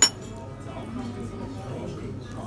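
A single sharp clink of metal cutlery against a glass dish, ringing briefly, followed by a low background murmur of voices and music.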